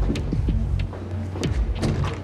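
Movie soundtrack: low sustained music score under a series of short knocks and thuds.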